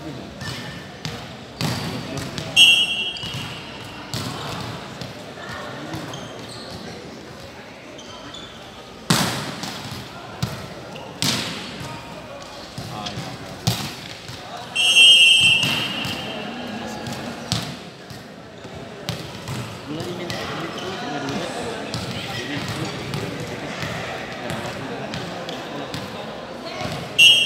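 Volleyball rally in a sports hall: a short, loud referee's whistle about two and a half seconds in, then a string of sharp ball hits, and a second, longer whistle about fifteen seconds in that stops play. Players' voices carry on underneath.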